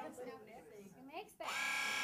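TrueSharp electric rotary-cutter blade sharpener switched on near the end, its small motor starting abruptly and running with a steady high buzz for its sixty-second sharpening cycle.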